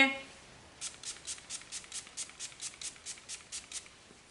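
Too Faced Hangover 3-in-1 setting spray pump-misted onto the face: a rapid run of about twenty short hisses, roughly seven a second, starting about a second in and stopping just before the end.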